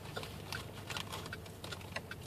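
Car cabin at a standstill with a steady low engine hum and a turn signal ticking about three times a second, set for a U-turn.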